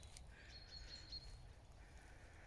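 Near silence with faint birdsong: a thin high whistle held for about a second, over a low outdoor hiss.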